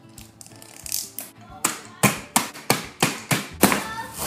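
Hands pounding a zip-top bag of Oreo sandwich cookies on a kitchen counter to crush them into crumbs for a cheesecake crust: sharp thumps, about three a second, starting about a second and a half in.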